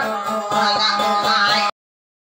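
A woman singing into a microphone with a fast, steadily plucked acoustic guitar accompaniment. All sound cuts off abruptly near the end.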